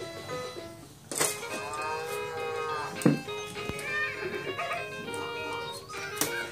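An electronic tune from a VTech Sit-to-Stand Learning Walker's activity panel starts about a second in and plays on, with a couple of sharp clicks partway through.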